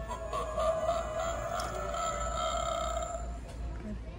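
Animated Halloween decoration playing a recorded sound effect through its small speaker: one long, wavering, voice-like call lasting about three seconds, which fades out near the end.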